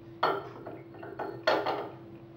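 Two clatters of kitchen pots or utensils, about a second apart, each dying away quickly.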